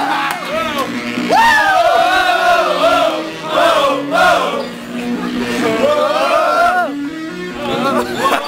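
Dance music with a steady stepping synth line, with a group of teenage boys shouting and whooping loudly over it in bursts.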